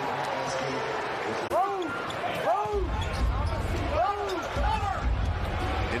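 Basketball game sound in an arena: sneakers squeaking on the hardwood court and a ball bouncing over crowd noise. A run of short squeaks comes in the middle, and a low rumble joins from about three seconds in.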